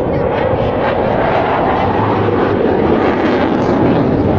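Single-engine JF-17 Thunder fighter jet flying past, its turbofan giving a steady, loud noise that swells slightly toward the end, with crowd voices underneath.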